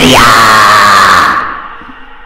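A loud, high-pitched scream that sweeps up in pitch at the start, holds, then fades away over its last half second.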